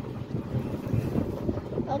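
Wind buffeting the microphone and an uneven low rumble of the road, recorded from the open rear of a moving Piaggio Ape E City FX electric three-wheeler.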